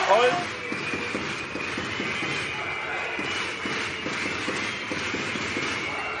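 Basketball being dribbled on a hardwood court, the bounces coming about two to three a second, over steady arena crowd noise.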